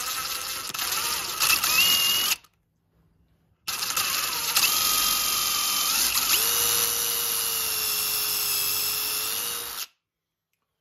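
Power drill boring a small pilot hole into a wooden axe handle, in two runs with a short stop between, the second about twice as long as the first. The motor's whine steps up and down in pitch as the speed changes.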